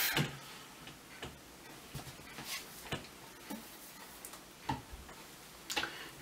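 Light, irregular clicks and knocks from a small telescope's equatorial mount and tube being handled, metal and plastic parts tapping and shifting.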